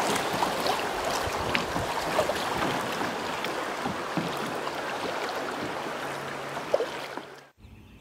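Creek water rushing and splashing around a moving kayak, with small drips and paddle splashes. The sound fades and cuts off suddenly shortly before the end.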